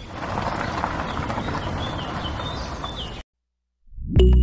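Gritty rolling and scraping of a miniature toy wheelbarrow's small wheel being pushed over sandy ground. The noise is steady and cuts off abruptly about three seconds in.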